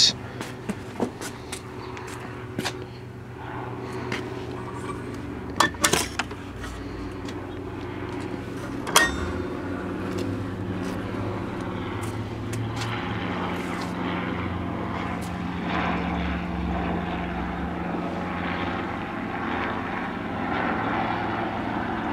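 An aircraft engine drones overhead as an airplane flies over, growing steadily louder. A few knocks and a sharp click sound in the first ten seconds.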